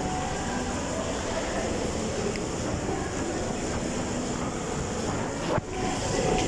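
Steady background noise of a shopping mall interior, an even wash of ventilation and distant activity. It drops out briefly near the end.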